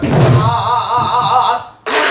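A Korean buk barrel drum struck once with its stick, with a woman's pansori singing voice coming in on the stroke and holding a note with a wide, wavering vibrato that breaks off near the end.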